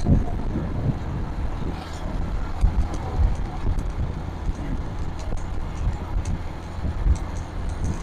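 Small motorcycle riding along in traffic: the engine runs steadily under wind buffeting the microphone in irregular low gusts.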